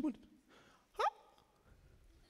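A man's single short vocal sound, sharply rising in pitch, about a second in, between pauses in his speech.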